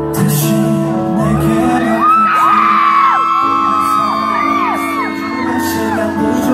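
Live concert sound in a large hall: a slow pop ballad's sustained keyboard chords over the PA, with many fans screaming and whooping over it from about a second in until near the end.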